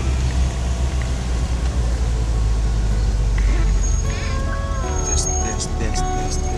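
Steady low rumble of a car heard from inside the cabin. In the last couple of seconds a few held tones, some sliding down in pitch, and a few sharp clicks come in.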